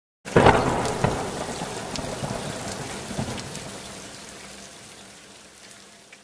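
Thunderstorm sound effect: a loud thunderclap about a quarter second in, then rain and rumbling that fade away gradually.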